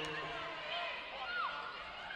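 Quiet indoor arena crowd murmur with faint, distant voices.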